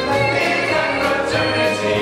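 Male stage ensemble singing a musical-theatre chorus number together, over instrumental accompaniment.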